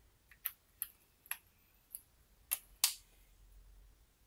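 A series of small, sharp clicks and taps, about six in all, from handling a rugged smartphone and fitting a USB-C plug to its sealed bottom port; the last two clicks, near the end, are the loudest.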